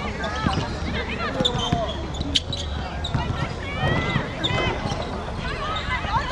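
Women footballers shouting and calling to each other on the pitch, short high calls throughout, with dull thuds of the ball being played.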